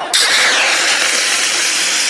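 Confetti cannon firing, blowing confetti out with a jet of compressed gas: a loud, steady hiss that starts a moment in and does not let up.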